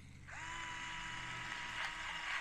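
Battery-powered gravity-switch electric pepper grinder switching on as it is tipped over: its motor whines up briefly, then runs steadily with the rasp of peppercorns being ground, with a few light ticks near the end.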